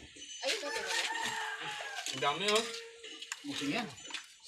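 A rooster crowing once, one long drawn-out call starting about half a second in, with people's voices around it.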